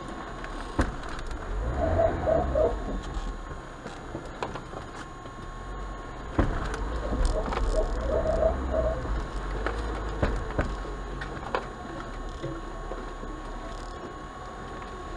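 Lada 4x4 (Niva) running in low steady rumble as it drives over rough ground, heard from inside the cabin, with several sharp clunks: the AVT self-locking (limited-slip) differentials engaging. Two short warbling sounds come about two seconds in and again about eight seconds in.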